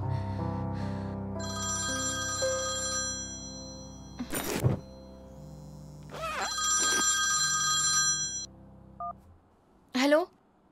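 Mobile phone ringtone sounding in two bursts, a cluster of high electronic tones, over a low, steady background music score that stops shortly before the end.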